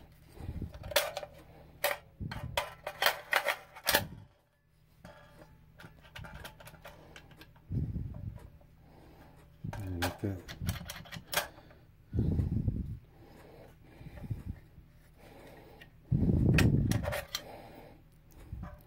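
Sharp metallic clicks and taps from handling an AR-15 lower receiver and working its newly fitted extended bolt catch, in small clusters, with several dull handling thumps, the loudest near the end.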